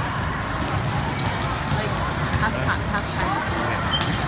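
Background din of a busy indoor volleyball gym: voices chattering and balls bouncing and thumping on the courts, all echoing in the large hall.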